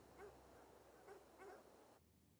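Faint short animal calls, several in a row, heard in a quiet night ambience.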